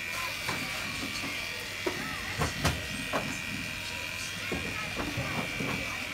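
Electric hair clippers running with a steady buzz during a haircut, with a few sharp clicks in the middle.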